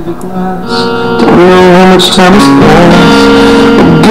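Guitar music played through a small budget Serioux 2.1 desktop speaker set with subwoofer, turned up to its maximum volume, getting louder about a second in.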